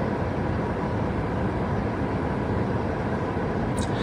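Steady hum of a car's interior: even background noise with no distinct events.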